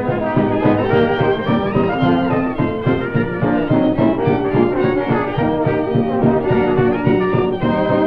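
Late-1920s dance orchestra playing a tune, with a cornet lead over trombone and violins and a steady beat underneath.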